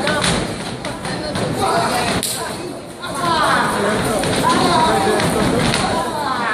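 Thuds and sharp slaps from a taekwondo sparring bout fought without protective gear, the sharpest about two seconds in, over background voices of the audience.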